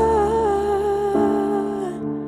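A woman's voice holding one long, slightly wavering note over sustained keyboard chords, the chord changing about a second in. The held note stops just before the end.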